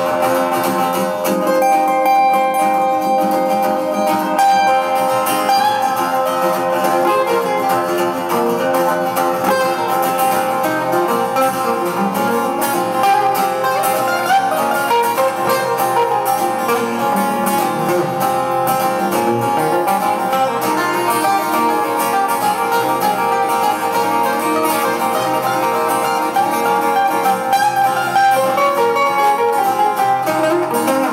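Two acoustic guitars played together in an instrumental passage, with no singing.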